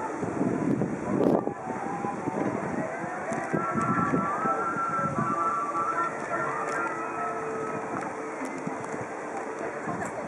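Wind buffeting the microphone in gusts, strongest in the first couple of seconds, with faint distant voices and thin wavering tones behind it in the middle.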